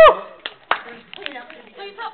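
A few scattered hand claps among murmured crowd voices in a hall, right after a loud whoop cuts off at the very start.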